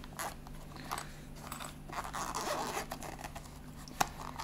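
A hard-shell electric shaver travel case being handled and opened: scattered light clicks and scuffs, then a rasping stretch of about a second, about two seconds in.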